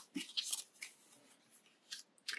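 Faint rustling of paper cards and stickers being handled and slid against each other, a few short scrapes in the first second.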